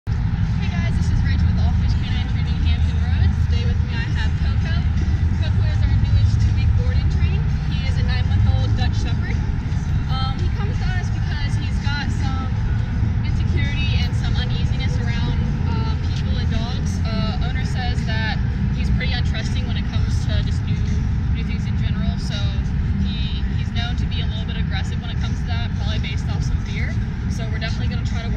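A steady low rumble with indistinct voices over it, with no clear words.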